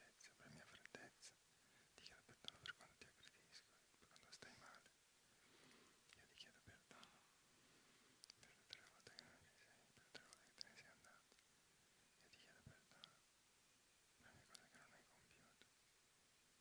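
Faint, scattered whispering: meditation participants whispering words of forgiveness under their breath.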